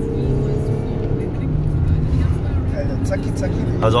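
Audi A6 3.0 TDI V6 turbodiesel accelerating hard, heard from inside the cabin as a steady low engine drone.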